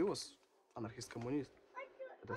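A man speaking in short spurts, his voice rising sharply in pitch at the very start.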